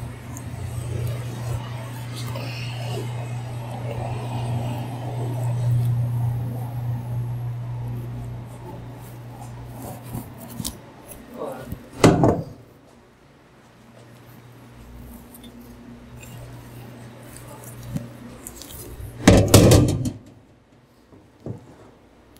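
Stainless-steel cookware handled in a commercial kitchen. A steady low hum runs for the first half, a sharp metal clank comes about halfway, and near the end there is a louder clatter as a metal pot and colander are set into a steel sink.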